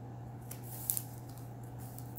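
Paper pages and flaps of a handmade journal rustling as they are handled, with a few short, crisp rustles. A steady low hum runs underneath.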